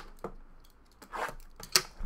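A sealed cardboard trading-card box being handled and torn open by hand: a click at the start, a rustling tear about a second in, then a sharp snap near the end, the loudest sound.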